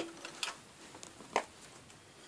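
A few soft clicks and taps of small metal parts being handled at a Shopsmith Mark V switch as its new locking nut is worked on by hand and needle nose pliers are brought in; the loudest click comes about a second and a half in.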